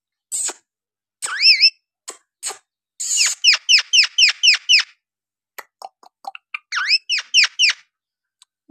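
Alexandrine parakeet calling: a few short clicks and a single rising-then-falling whistle, then a fast run of short chirps, each dropping in pitch, about five a second, starting about three seconds in. After a few more clicks, a shorter run of the same chirps comes near the end.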